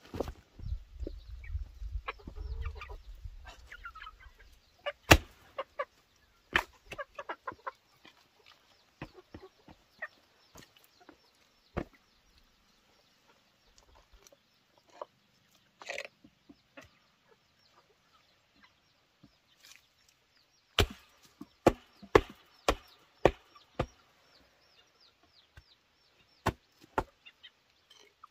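Chickens clucking, with scattered sharp knocks of flat stone slabs being set into a mud path. The knocks come in a quick run about three-quarters of the way through.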